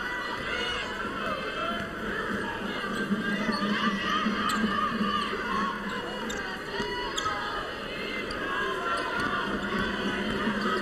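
Basketball arena sound during live play: a steady murmur of crowd voices, with the ball bouncing on the hardwood and sneakers squeaking now and then.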